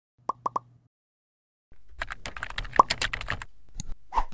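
Three quick pops in a row, then about two seconds of rapid computer-keyboard typing sound effects, with a single sharper click near the end.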